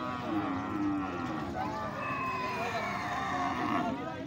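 Cattle lowing: two long, drawn-out moos, the first lower and within the first second or so, the second higher and longer from about a second and a half in, its pitch slowly falling.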